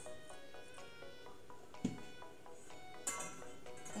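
Soft background music, a melody of held notes changing in steps.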